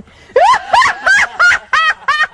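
A woman's high-pitched laughter in quick, evenly repeated bursts, about three a second, starting about a third of a second in.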